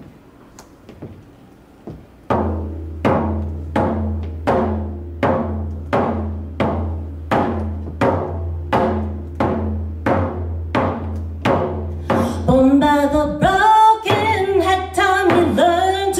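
Homemade hand drum with a synthetic (not animal) skin, struck in a steady beat of about three strikes every two seconds, each strike ringing low, starting a couple of seconds in. About twelve seconds in, a woman begins singing over the drum.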